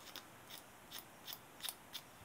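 A handful of faint, sharp ticks and clicks, a few per second, from small fly-tying tools and materials being handled at the vise.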